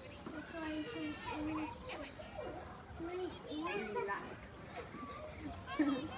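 Several children's voices chattering and calling out, overlapping with one another, with adult voices mixed in.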